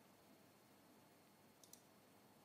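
Near silence, broken about three quarters of the way through by two faint computer mouse clicks close together.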